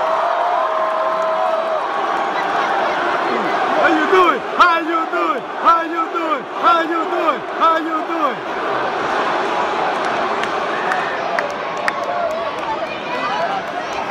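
Arena crowd cheering, with a held call in the first two seconds and a run of rhythmic shouted chants about every half second from about four to eight seconds in.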